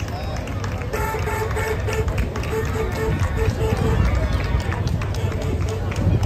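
Spectators chattering along the street while a Citroën 2CV's air-cooled flat-twin engine passes with a low rumble. From about a second in, a tone pulses about four times a second for several seconds.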